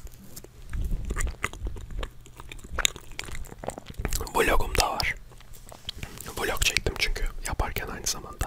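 Close-miked chewing of a mouthful of soft chocolate biscuit cake with banana: moist mouth sounds and small clicks, with a low rumble about a second in.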